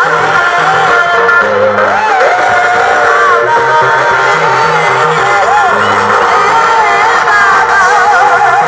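A church choir singing with a live band of keyboard, bass and drums, amplified through loudspeakers, loud and unbroken, the voices wavering in pitch over a stepping bass line.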